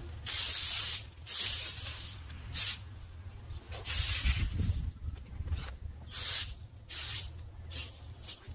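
Leaf rake scraping across a concrete sidewalk, dragging loose grass clippings, dirt and pine cones: a series of short raspy strokes, roughly one a second, some longer than others.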